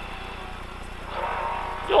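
Lada VFTS rally car's four-cylinder engine running at speed, heard from inside the cabin as a steady low hum, with a rushing noise swelling up about a second in.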